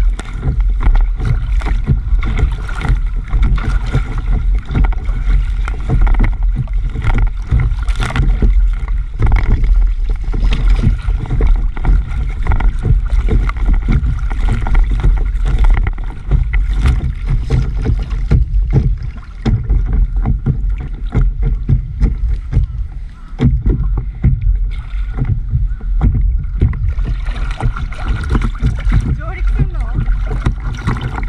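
Lake water slapping and splashing against the nose of a stand-up paddleboard as it is paddled through light chop, heard close up at the waterline with a heavy low rumble of water and wind. The splashing is busy and irregular, easing briefly a couple of times in the second half.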